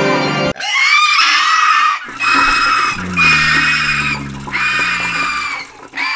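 Music cuts off abruptly about half a second in, followed by four long, high-pitched cries separated by short gaps, with a lower pitched sound sliding slowly downward beneath the last two.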